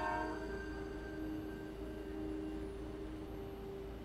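Background drama score: a sustained held chord that thins out about half a second in, leaving a low steady drone of held notes.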